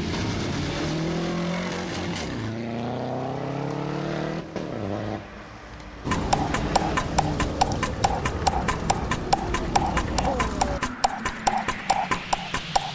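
A car engine revving hard, its pitch climbing in repeated sweeps and then falling, as the car spins its tyres and pulls away. About six seconds in, music with a fast, even clicking beat takes over.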